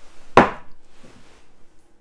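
A single sharp knock of kitchenware on the wooden worktop about half a second in, trailing off into faint handling noise.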